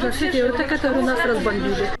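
Speech only: an elderly woman talking.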